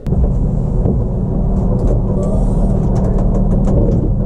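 A steady low mechanical drone, like a motor running, with a few faint clicks; it starts abruptly.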